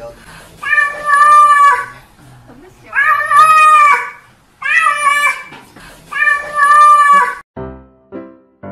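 A grey-and-white cat meowing four times, each meow long and drawn out.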